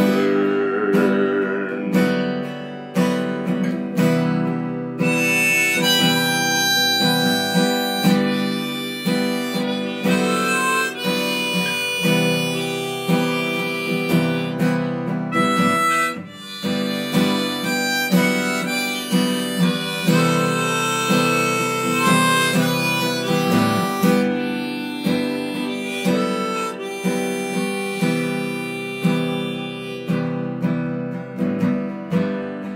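Harmonica playing a melody of held notes over steadily strummed acoustic guitar chords, an instrumental break in a folk song.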